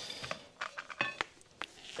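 A few light metallic clicks and clinks, scattered, with one short ringing clink just after a second in: beadlock-ring hardware and hand tools being handled while the beadlock ring comes off a wheel.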